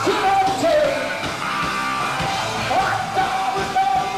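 Live rock band playing loudly: electric guitars, bass and drums, with a lead singer's voice over the top.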